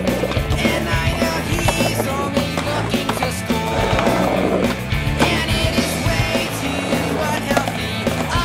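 Music with a repeating bass line, mixed with skateboard sounds: urethane wheels rolling on pavement and the board clacking and grinding on concrete ledges.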